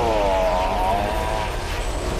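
A man's long, drawn-out shout, dipping slightly in pitch and then held until it breaks off about a second and a half in. Under it is a steady low rumble from a fiery blast sound effect.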